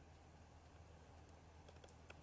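Near silence: a faint steady low hum with a few faint clicks in the second half.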